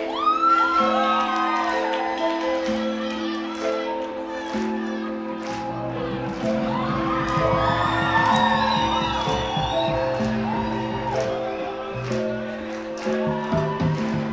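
Live rock band playing an instrumental stretch with held keyboard chords, electric guitar and drums. The low end fills out about five seconds in.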